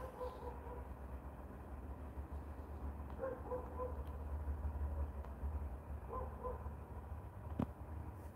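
Faint animal calls, short low pitched notes in small groups of two or three, heard three times over a steady low rumble, with one sharp click near the end.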